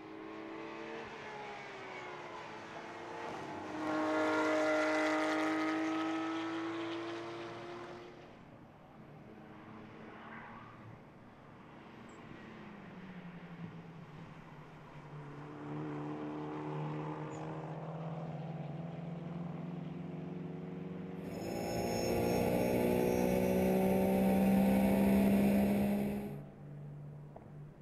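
Race car engines running at full throttle on a circuit. One car rises loud and fades in the first several seconds, another holds a steady engine note through the middle, and the loudest comes near the end before cutting off.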